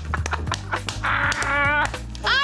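Background music with a series of light clicks and taps from eggs being cracked and handled over a ceramic face-jug egg separator, then a burst of laughter near the end.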